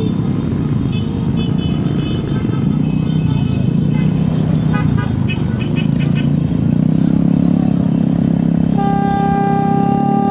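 Motorcycle engine and road noise during a group ride, with short horn beeps in the first few seconds and one long, steady horn blast held for about two seconds near the end.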